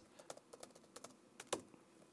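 Faint, irregular clicks of fingers pressing keys on a laptop keyboard, a handful of separate taps.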